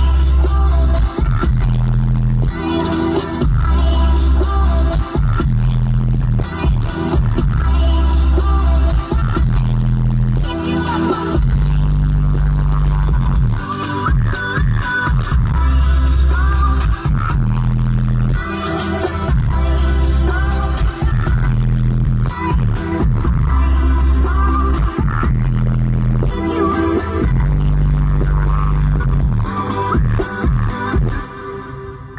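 A song with singing and heavy bass played loud through a car stereo with an aftermarket subwoofer, heard inside the cabin. The deep bass comes in blocks of a second or two under the melody.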